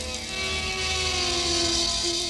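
Progressive rock band playing live, captured straight off the mixing desk with no bass guitar in the mix: a sustained lead note slides down and is then held, while a hissy high wash swells toward the end.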